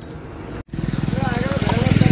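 A vehicle engine with a rapid, even low pulse passing on the road, getting steadily louder as it approaches. It starts after a brief dropout in the sound about a third of the way in.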